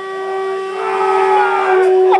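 Electric guitar feedback through the amplifier: a steady, unwavering high tone held throughout, with a second, higher tone joining about a second in.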